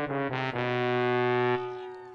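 A short brass fanfare sound effect marking a home run: a couple of quick notes, then one long held note that fades away near the end.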